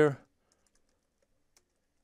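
A few faint computer keyboard keystrokes, the last about one and a half seconds in.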